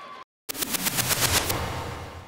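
A rapid rattling sound effect for a countdown graphic transition: a machine-gun-like burst of sharp cracks, about ten a second for roughly a second, then fading away. It follows a brief cut to silence.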